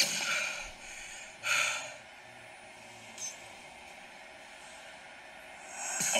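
A person breathing heavily, two loud breaths in the first two seconds, then only a faint steady background hiss.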